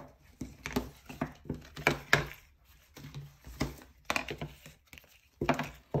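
Small cardboard board books being handled and set down on a table: a run of irregular taps and knocks with light rustling.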